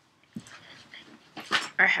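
Faint rustling and a few light clicks of small items being handled, then, near the end, a woman's voice beginning a drawn-out "I".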